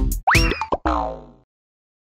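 Cartoon sound effects for a stumble and fall: a springy boing with a quick upward swoop in pitch, then a falling slide tone that fades out. A bit of the background music cuts off just before them.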